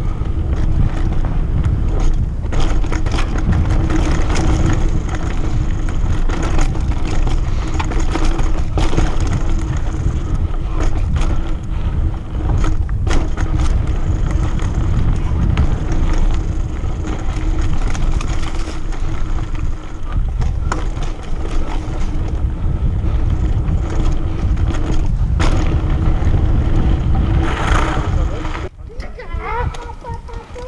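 Mountain bike riding down a dirt forest trail. Heavy wind rumble on the microphone mixes with tyre noise, and knocks and rattles come as the bike rolls over roots and rocks. A steady hum runs underneath and stops about five seconds before the end.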